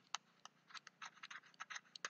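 Stylus tapping and scratching faintly on a tablet screen as a word is handwritten: a loose series of short ticks, thickening in the second second.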